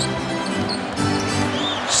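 Arena music with steady held low notes over live game sound, with a basketball being dribbled on the hardwood court.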